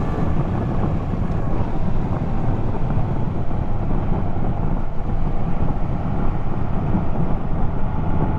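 A 2016 Yamaha XSR900's three-cylinder engine running at a steady cruise, heard on board the moving bike and mixed with rushing wind on the microphone.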